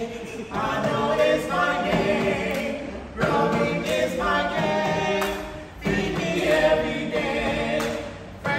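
A woman and two men singing a song together as a small vocal group.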